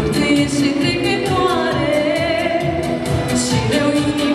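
A woman singing a folk song with vibrato into a microphone through the stage sound system, over instrumental accompaniment with a steady beat.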